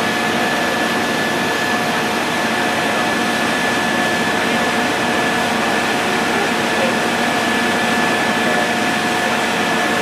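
Steady, loud machine noise with a constant high whine and lower hums held throughout, unchanging.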